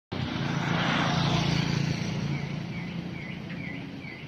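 Outdoor ambience: a vehicle's engine hum and road noise that swells and then fades away, with a bird giving a short chirp repeated about two or three times a second in the second half.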